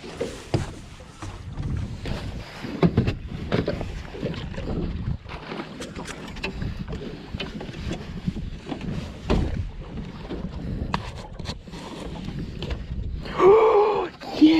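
Irregular knocks and thumps of someone moving about on a small fishing boat and handling gear, with wind on the microphone.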